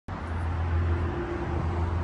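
Steady outdoor background noise: a low, even hum with a faint hiss and no distinct events, the kind of sound distant road traffic makes.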